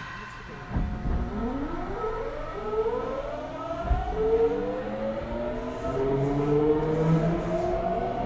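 Nagoya Subway 5050-series train's GTO-VVVF inverter traction motors, on a car still running its original, unmodified inverter software, accelerating. Several whining tones rise together from about a second in and step up in pitch as speed builds, with a low thud about a second in and another about four seconds in.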